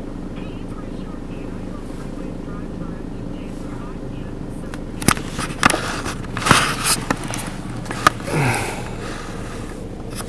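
Handling noise from a handheld camera as it is swung around: a cluster of knocks and rubbing about halfway through, over a steady low hum.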